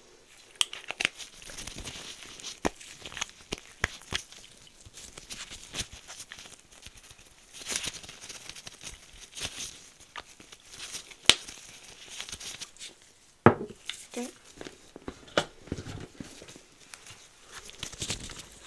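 Nitrile-gloved hands handling and crinkling small packets and paper items close to a microphone, with an irregular run of sharp clicks and taps and one louder snap about two-thirds through.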